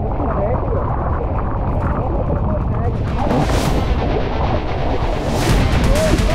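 Strong wind buffeting a low-mounted camera's microphone, with sea water sloshing and splashing around an inflatable deck; two louder rushes of noise come about three and a half and five and a half seconds in.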